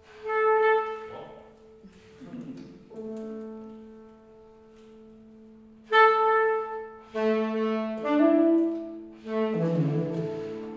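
Tenor saxophone and grand piano playing a slow jazz piece. Sustained saxophone notes ring over piano chords, with a phrase entering about a second in and a louder, moving melodic line from about six seconds in.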